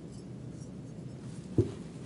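Quiet room hum, then a single short, low thump about one and a half seconds in: a stemmed wine glass's base set down on the cloth-covered table.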